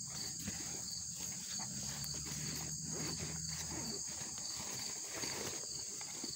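Insects chirring steadily in the grass, a continuous high-pitched trill. A faint low hum comes in for a couple of seconds in the middle.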